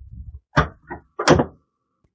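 Sheet-steel PC case side panel sliding off its rails and being pulled away: a low rumble, then three sharp metallic scrapes about a third of a second apart, the last the loudest.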